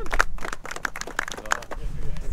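A small group clapping in quick, uneven claps, with a few voices cheering.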